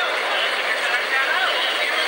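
A man speaking into a handheld microphone, over a steady background haze of noise.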